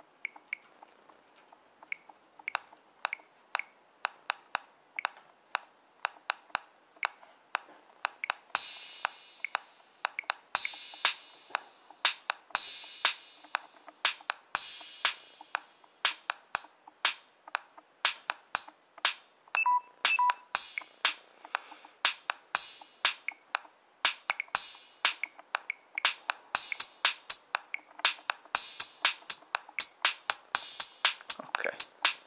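RD3 Groovebox drum-machine app on a Samsung Galaxy S playing a looped electronic drum pattern, thin with little bass. It starts as a sparse run of clicks and builds as steps are tapped in, with hissy hi-hat hits joining about eight seconds in and the beat growing busier toward the end.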